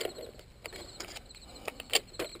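A few light clicks and knocks of hands prying the foam canopy hatch off a model jet, over faint steady chirring of crickets.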